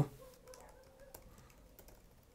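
Faint keystrokes on a computer keyboard, a quick irregular run of light clicks as a command is typed.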